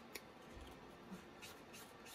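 Faint rubbing and dabbing of an ink sponge dauber along the edge of a paper strip, with a few light ticks.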